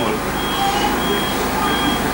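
Several short high-pitched electronic beeps in a row, about two a second, over a steady low background hum.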